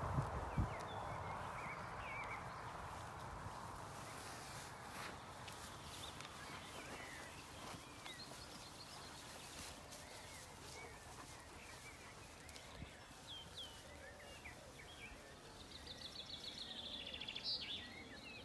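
Faint pasture ambience with scattered short bird chirps and a rapid bird trill near the end, over soft clicks and tearing from sheep cropping grass close by.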